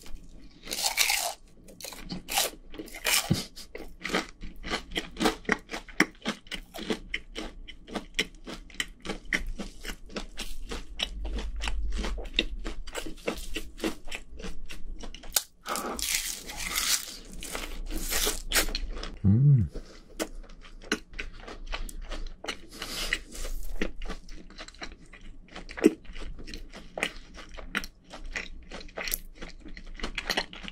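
Close-miked crunching and chewing of crispy battered fried chicken, a dense run of small crackles and clicks with louder crunchy bites about a second in, around halfway through and a little later.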